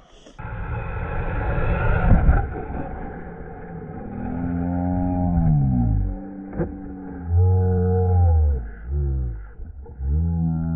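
Slowed-down sound of RC car electric motors revving: deep, drawn-out notes that swell and slide down in pitch, with a single knock about six and a half seconds in.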